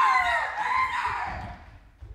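A person's long, loud, high-pitched scream that rises sharply, wavers and falls in pitch, fading out after about a second and a half.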